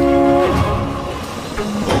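Dramatic background-score sound effect: a held horn-like chord that breaks off about half a second in. A noisy wash follows, and a hit comes near the end.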